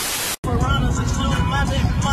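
A burst of TV static hiss for about half a second, cutting off sharply. It is followed by steady road rumble inside a moving car, with voices faintly in the background.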